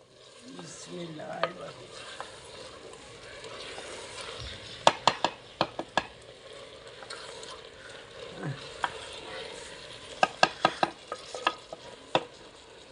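A long-handled ladle stirring green beans and potatoes as they fry in oil and spices in a clay pot, with a steady sizzle. Two runs of sharp clicks, about five seconds in and again about ten seconds in, come from the ladle knocking against the pot. This is the dry frying (bhunna) stage, before water is added.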